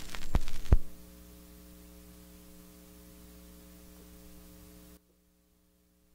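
Two sharp clicks, the second louder, then a steady mains hum with light hiss from the record-playback equipment. The hum cuts off abruptly about five seconds in.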